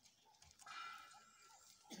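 Near silence, with a faint, steady pitched animal call lasting just over a second, starting about half a second in.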